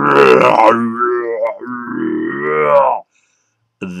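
A man's voice imitating a polar bear's roar, three drawn-out roars in a row.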